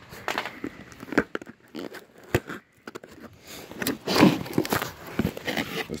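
Cardboard speaker box and plastic packaging being handled and opened: irregular rustling and scraping with a few sharp knocks.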